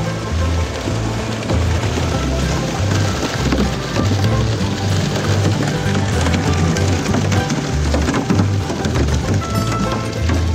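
Background music with a bass line, over a continuous rush and splash of water as live catfish pour down a metal stocking chute into the lake.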